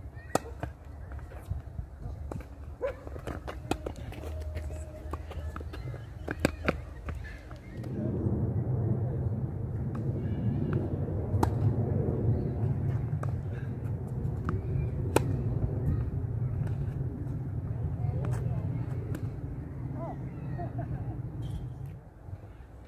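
Tennis rally on a hard court: sharp pops of racket strings hitting the ball and of the ball bouncing, spaced a second to a few seconds apart. From about eight seconds in, a steady low rumble rises under them and stays.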